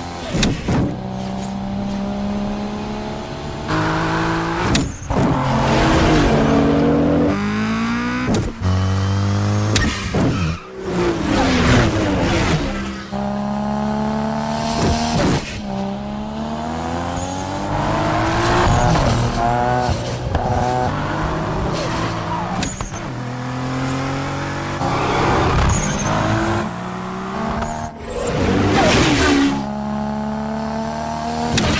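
Sports-car engines accelerating hard in a street race, the pitch climbing and dropping back at each gear change, over and over. Several sudden loud bursts cut across them.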